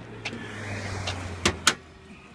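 Car bonnet being opened: handling noise builds, then two sharp clicks follow close together about a second and a half in, from the bonnet latch and safety catch letting go as the bonnet is lifted.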